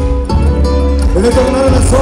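Live amplified band music: acoustic guitar and electric bass with a strong low end. Male voices join in singing about a second in.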